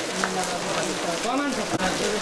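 Voices talking, several at once, over a steady noise haze.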